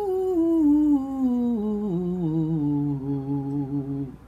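A woman's vocal warm-up: one long sung 'ooh' that slides down from high to low in small steps on a single breath and stops near the end. It is a daily warm-up for a voice she hears as having a little fry after hours of singing the night before.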